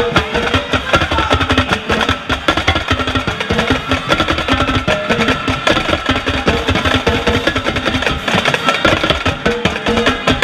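A drumline playing a cadence, with tenor drums (quads) struck close at hand in a dense, unbroken run of strokes, some of them ringing at a pitch.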